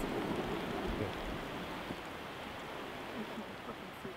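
Quiet, steady outdoor background hiss with no distinct events, easing slightly toward the end.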